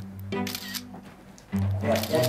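Background music with held low notes, and a smartphone camera shutter clicking about half a second in as a photo is taken.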